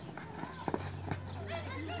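A few sharp thuds of a football being kicked on a dirt pitch, twice close together about a second in, with spectators' voices in the background.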